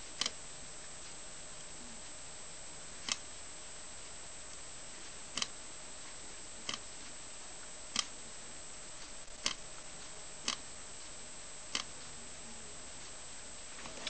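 A tiny vibrating motor taken from an Oral-B toothbrush, on a home-made solar vibrating bug, giving a short tick each time its FLED solar engine discharges the capacitor through it. There are about eight brief pulses, irregularly one to three seconds apart. Under lamp light the solar cell only just charges it enough to fire, hence the slow, uneven pulsing.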